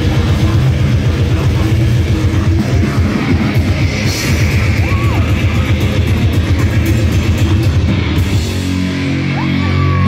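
Live grindcore band playing loud and fast: distorted electric guitar and bass over rapid blast-beat drumming, shifting to held low notes near the end.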